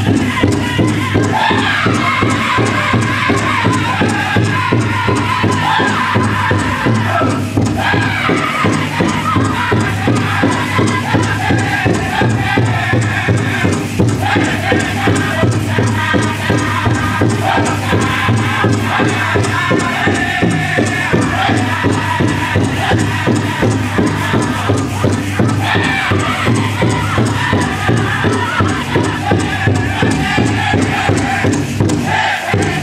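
Powwow drum group singing a jingle dress song in chanted vocables over a steady beat on a large powwow drum, which carries through the whole stretch without a break.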